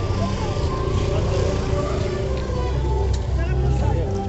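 Overlapping voices of a crowd over a steady low rumble.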